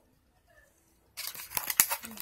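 About a second of near silence, then crinkling and several sharp clicks of a clear plastic false-eyelash pack handled close to the microphone.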